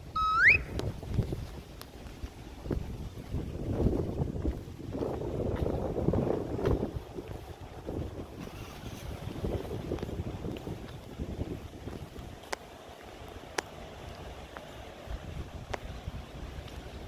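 Wind buffeting the microphone outdoors, a low gusty rumble that swells for a few seconds about four seconds in. A short rising whistle-like tone comes right at the start, and a couple of sharp ticks come later.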